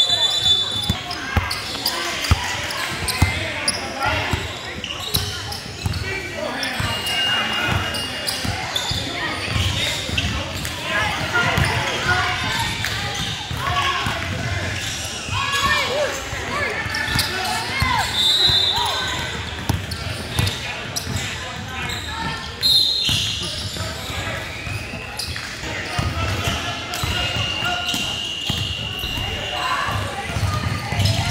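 Indoor basketball game: a ball bouncing on a hardwood court amid the chatter of players and spectators, echoing in a large hall, with a few short high squeaks.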